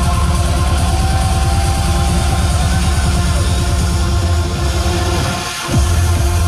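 Loud trance music over a nightclub sound system, with a steady pulsing bass line. Near the end the bass drops out for a moment, then comes back in.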